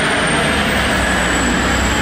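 Steady low outdoor city rumble, a mix of distant traffic and street noise, swelling slightly about half a second in.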